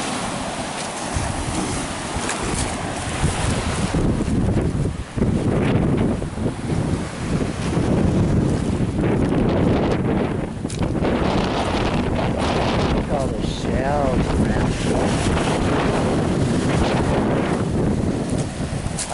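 Strong wind buffeting the microphone in a steady rumble, with waves breaking on a pebble beach underneath.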